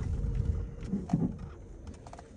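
Low road and drivetrain rumble inside the cabin of a moving 2013 Ford C-Max Hybrid, dying away over the first second or so, with a few faint clicks and a short low hum just past a second in.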